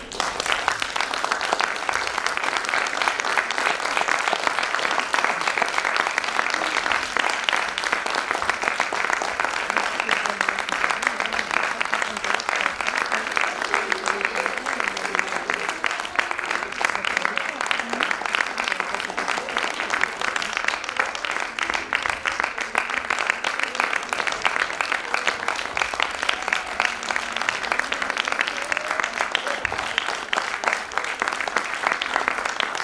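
Audience applauding, a dense and steady clapping that breaks out suddenly at the start and carries on throughout, with voices calling out among the crowd.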